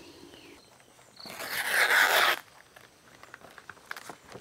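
A banana leaf being torn from the plant: one ripping tear lasting about a second, starting just over a second in.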